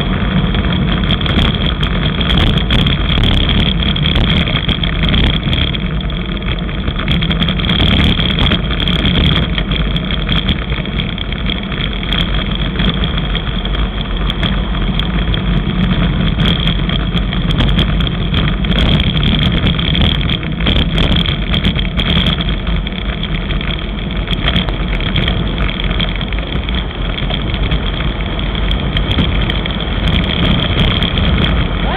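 Steady rushing of wind over a bicycle-mounted camera's microphone, mixed with tyre and road rumble, as a road bike rolls downhill on rough asphalt. A thin steady high tone runs underneath.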